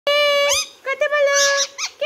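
Indian ringneck parakeet making long, steady, squeaky calls: one held note that sweeps upward at its end, a second, longer held note, then a short rising chirp near the end.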